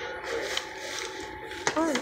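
Low background noise of a store checkout area with faint, indistinct voices; a voice starts just before the end.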